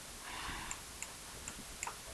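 Faint clicks of a computer mouse button, a few irregular ticks over low room noise, as the mouse is used to write by hand on screen.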